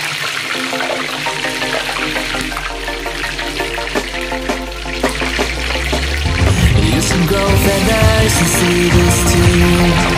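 Chicken skin deep-frying in hot oil, a steady sizzle, under background music; about six seconds in the music grows louder with a heavy bass beat.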